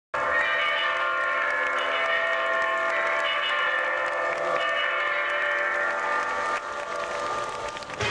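Show music playing loud held chords that change every second or two, growing quieter near the end.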